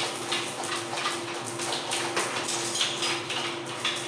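Scattered light clinks and knocks of hands working on a clogged sink drain pipe inside the under-sink cabinet, over a steady hum.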